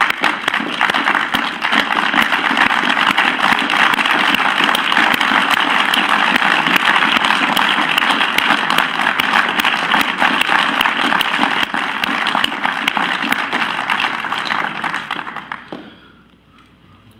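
Applause from a chamber full of people clapping, sustained and even, dying away in the last second.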